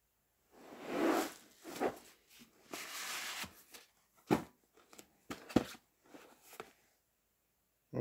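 A plastic DVD keepcase sliding out of its cardboard outer box, making soft rubbing, scraping sounds, then a few sharp knocks as the case is handled.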